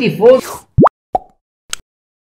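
A man's voice trails off, then comes a cartoon 'plop' sound effect that slides quickly up in pitch, a short blip just after it, and a faint click about a second later.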